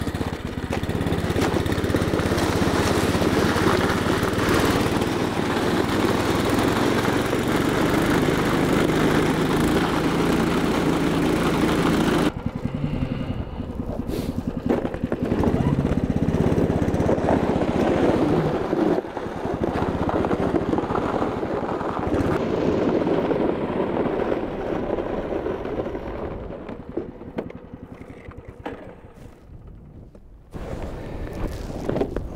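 Small engine of a tracked snow machine running steadily under load while it tows sleds across lake ice. About 12 s in the sound changes abruptly and loses its highs, and it fades over the last few seconds as the machine moves away.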